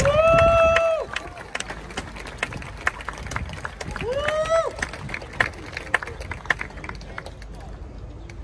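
Scattered clapping from a small crowd, with two long, high shouted cheers: one at the start, held for about a second, and another about four seconds in that rises in pitch.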